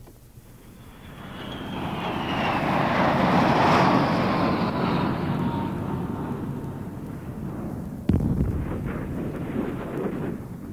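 Jet airplane flying past as a stereo sound effect: a noise that swells to a peak and slowly fades, with a whine falling in pitch as it passes. A sudden thump about eight seconds in.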